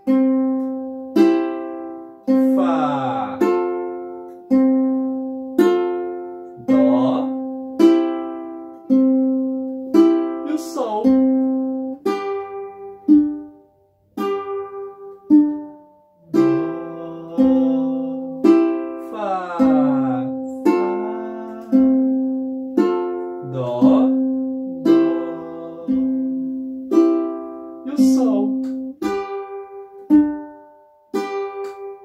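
Ukulele fingerpicked slowly in a 'Puxa 3' pattern: strings 4, 2 and 1 plucked together, then string 3 alone with the index finger, about one pluck a second. It moves through C, F, C and G chords, two pattern cycles on each chord, with short breaks near the middle.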